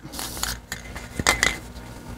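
Aerosol spray-paint can being shaken, its mixing ball clinking against the metal can in a few sharp rattles; the can is nearly empty of paint.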